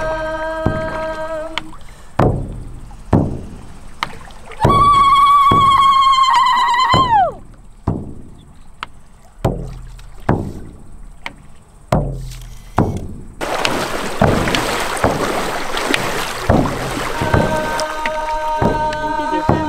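Hide frame drums beaten with a padded beater in a steady beat a little faster than once a second, each stroke ringing low. A long high held tone sounds over the drum from about five seconds in and bends downward as it breaks off near seven seconds, and a rushing noise joins the drumming for the last few seconds.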